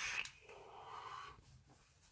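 A drag on an e-cigarette ends just after the start, followed by a faint breath out of vapour lasting about a second.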